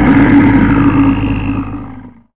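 Sound effect for an animated logo: a loud, deep, rough rumble with a hiss above it that tails off near the end and stops just after.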